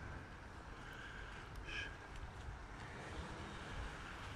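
Faint outdoor background: a low, steady rumble of distant road traffic, with a short faint high sound about two seconds in.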